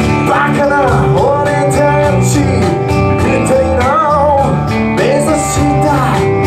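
Live rock band playing: electric guitars and bass over a steady drum beat, with a male lead vocal singing short phrases.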